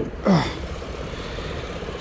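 Car hood lifted open, with a sharp click at the start, followed by the steady hum of an engine idling.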